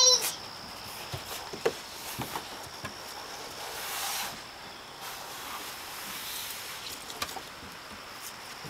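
A toddler sliding down a plastic playground slide: a brief soft swish of body and clothing on plastic about four seconds in. Scattered light knocks come from the play set over a faint steady high tone.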